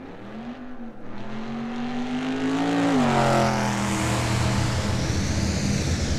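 Electronic megamix intro played from vinyl: an engine-like drone starts suddenly, rises slightly in pitch, then drops about halfway through as a rushing noise swells over it.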